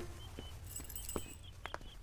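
Quiet outdoor ambience with a few faint, irregular clicks and taps, five or six spread across two seconds.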